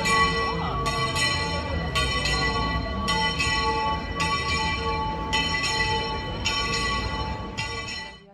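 Bells ringing, struck roughly once a second, each stroke ringing on into the next. The ringing cuts off suddenly at the end.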